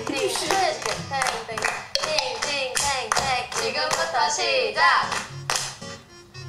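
Group of young women clapping their hands in rhythm and calling out in Korean in turn, during a clapping and counting game, over background music.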